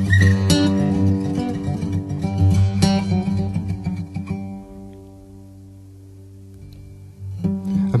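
Acoustic guitar playing an instrumental passage of a song, with busy plucked notes that thin out about halfway through to a few quieter held low notes before picking up again near the end.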